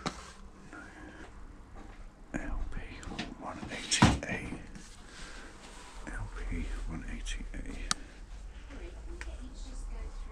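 Low, indistinct voices, hushed and too faint for words, with a few short handling clicks. A sharp knock about four seconds in is the loudest sound.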